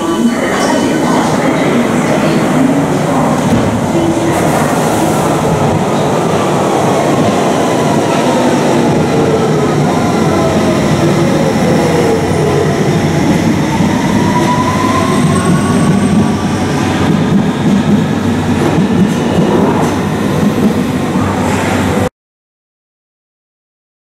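London Underground S Stock train pulling out of an underground platform. Its traction motors give gliding tones that fall and then rise again as it accelerates away, over a steady rumble of wheels on track.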